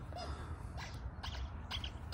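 A few short bird chirps over a low steady outdoor rumble, with the soft handling of a knife being slid into a leather sheath.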